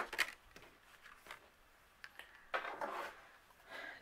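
Small desk handling sounds of cardstock and a plastic embossing powder container: a sharp click at the start, a few faint ticks, then a brief rustle about two and a half seconds in.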